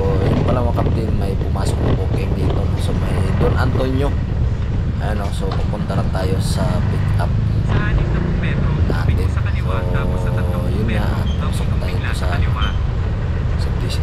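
Steady low rumble of a motorcycle riding at street speed, with wind on the helmet-mounted microphone, and the rider talking over it now and then.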